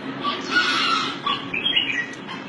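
Rooster squawking: one longer harsh call about half a second in, then a few short clucks near the end.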